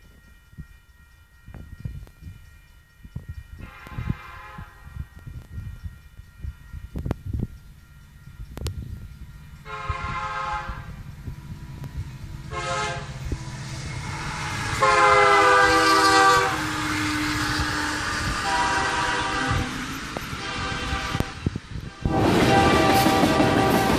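Union Pacific freight train led by SD70M No. 4112 approaching and passing, its multi-chime air horn sounding long, long, short, long, the grade-crossing warning. The last long blast, about 15 s in, is the loudest. Two fainter blasts follow, over the growing rumble of the diesel locomotives and the rolling cars.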